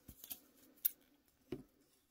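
A pair of scissors being picked up and handled beside a length of shock cord, giving a few light clicks. There is a sharper click a little under a second in and a duller knock at about a second and a half.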